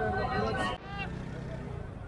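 Busy street-market hubbub: men's voices over a low traffic hum. The voices stop abruptly about a second in, leaving the hum and a faint background murmur.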